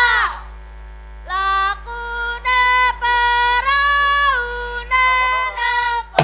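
Children singing a Javanese dolanan (children's game) song in unison: a series of short held notes stepping up and down in pitch, after a brief lull about a second in.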